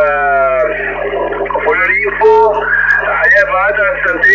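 A man's voice received on single-sideband through a Kenwood TS-570 transceiver's speaker, narrow with no treble, over a steady low hum.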